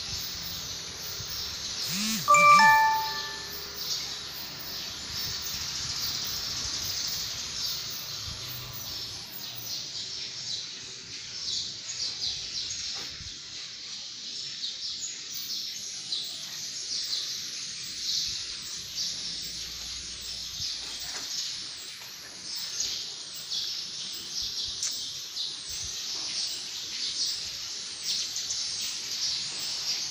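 Small birds chirping continuously. About two and a half seconds in, a single short, bright bell-like ding rings out as the loudest sound.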